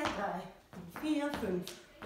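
A woman's voice calling out the dance count, with light shoe taps and steps on a wooden floor as she dances kick-ball-change steps.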